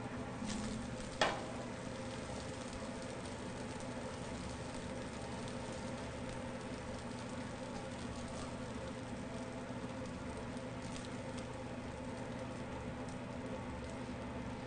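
Spatula scraping a hot frying pan of wild rice and corn as the food is spooned onto a plate, with faint sizzling, over a steady kitchen hum. A sharp knock sounds about a second in.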